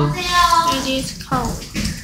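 Speech: a voice speaking a short phrase, with no other sound standing out.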